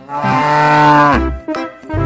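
A cow mooing: one long moo of about a second that drops in pitch at its end, over background music with a rhythmic bass.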